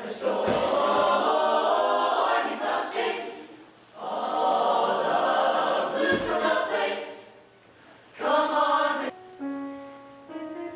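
A mixed-voice choir singing unaccompanied in phrases with short near-silent pauses between them. Near the end a loud phrase cuts off sharply and a quieter held chord follows.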